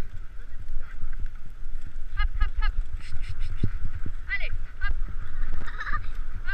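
A pair of harnessed horses moving over snow: a run of dull low thuds throughout, with short squeaky, honk-like pitched sounds coming several times.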